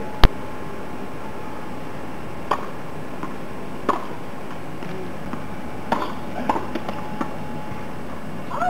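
Tennis balls struck with rackets and bouncing on a hard court during a rally: one very sharp, loud hit about a quarter second in, then fainter hits and bounces every second or so.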